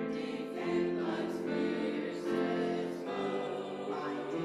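Church choir of mixed men's and women's voices singing together in held, sustained notes that move from chord to chord.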